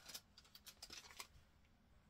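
Near silence broken by a few faint, brief clicks and rustles as a small wrapped paper advent-calendar packet is picked up and handled.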